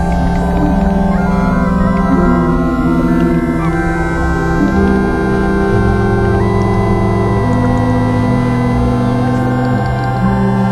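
Synthesizer score of slow, layered held notes that step to new pitches every second or two over a sustained low bass drone.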